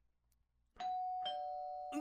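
Two-tone doorbell chime, a ding-dong: a higher note just under a second in, then a lower one about half a second later, both ringing on as they fade. It announces the arriving guest.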